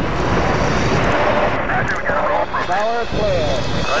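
Industrial noise music: a loud, dense wash of noise, with a warped, pitch-gliding voice-like sample rising and falling over it in the second half.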